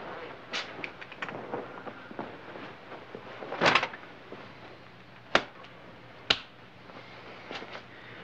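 Objects being handled at a garage workbench: light clicks and knocks, a louder scraping clunk about halfway through, then two sharp knocks about a second apart.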